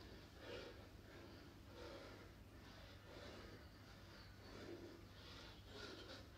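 Near silence: faint breathing from a man doing press-ups, one soft breath about every second and a half, over a low steady room hum.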